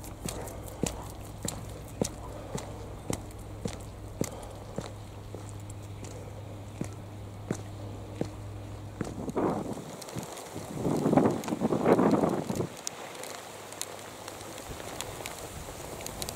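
Footsteps on wet concrete steps and path, a regular tread of short clicks about every half second, over a low steady rumble that drops away about ten seconds in. Around eleven seconds a louder rush of noise lasts a second or two.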